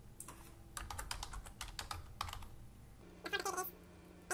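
Typing on a computer keyboard: a quick run of keystrokes over about two seconds. A brief voice-like sound follows near the end.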